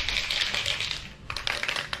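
Aerosol spray can of rubberized coating being shaken, the mixing ball rattling inside in quick clicks, with a short pause about a second in, to mix the coating before spraying.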